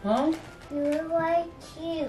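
A young child singing a few short held notes in a high voice.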